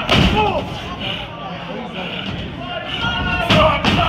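A wrestler's body slamming onto the ring mat with a loud thud just after the start, then a second loud impact about three and a half seconds in, with crowd voices shouting throughout.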